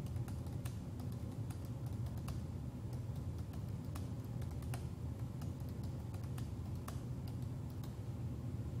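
Computer keyboard keys tapped at an irregular pace, scattered sharp clicks about two a second, over a steady low hum.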